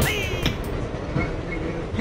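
Inside a moving subway car: the train's steady rumble of wheels on rails. A brief fading sound at the very start dies away within about half a second.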